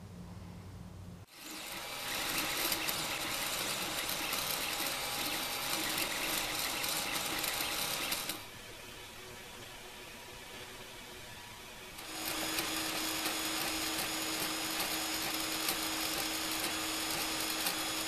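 Creality FDM 3D printer running: a steady mechanical buzz of its stepper motors and fans, starting about a second in, dropping to a quieter stretch in the middle, then running again with a steady hum.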